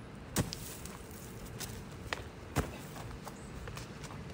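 Feet of a freerunner landing from a flip with a sharp thud about half a second in, then a few scattered footfalls and thuds on dirt and wood mulch, the loudest about two and a half seconds in.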